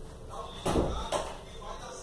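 Household knocks: a loud thump about two-thirds of a second in and a shorter knock about half a second later, with a faint voice.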